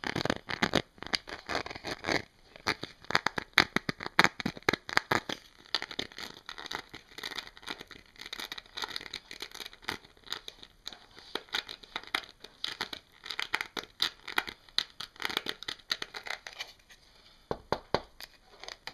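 Fingers and fingernails rapidly scratching and tapping on a luchador-style wrestling mask: a dense run of quick, scratchy strokes that breaks off briefly near the end.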